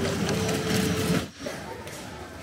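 Wire shopping cart rolling over a tiled supermarket floor, its wheels and basket rattling continuously. The rattle stops abruptly a little past halfway, leaving quieter store background.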